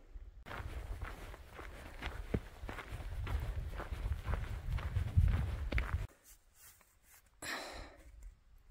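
A hiker's footsteps on a dirt and rock trail over a low rumble on the microphone. The sound drops away suddenly about six seconds in, and a short breath comes near the end.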